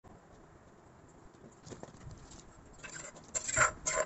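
Soft rustles and small taps of dishware and food being handled, rising in the last second to a few louder scuffs and knocks as a plate is set down on a tray.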